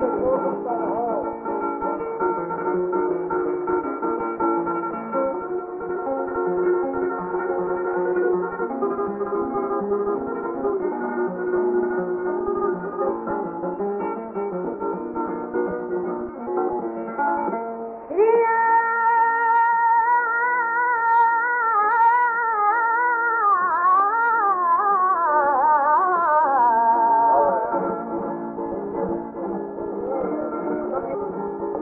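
Flamenco on a 1930 shellac 78 rpm record, with the narrow, dull sound of an early disc: a Spanish guitar plays alone, then a little over halfway through a female flamenco singer enters with a long, wavering, ornamented sung line that is the loudest part, and near the end the guitar carries on alone.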